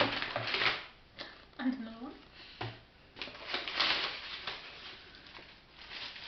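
A brown paper carrier bag rustling and aluminium foil crinkling as a foil-wrapped naan is lifted out. The sound comes in two bursts, one at the start and a longer one around the middle.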